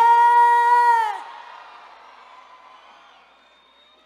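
A woman's singing voice holding one long high note without accompaniment, bending down and breaking off about a second in, then a fading, much quieter tail of crowd and stage echo.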